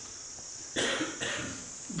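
A person coughing twice in quick succession, about a second in.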